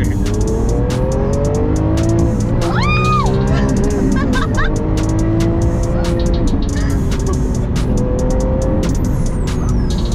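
A Lamborghini Aventador's V12 accelerating hard, heard from inside the cabin, its revs climbing, easing and then climbing again. A woman passenger screams and cheers over it, with one high shriek about three seconds in.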